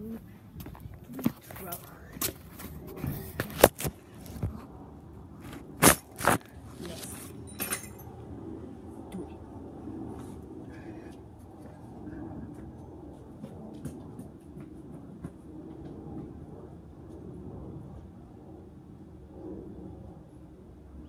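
Handling noise from a phone being carried and set down: a run of clicks and bumps, loudest two sharp knocks a third of a second apart about six seconds in. After that comes a quieter low rustle.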